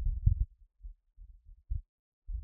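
Martian wind gusting over the Perseverance rover's microphone: a low, uneven rumble, strongest in the first half second, then thinning to faint scattered puffs.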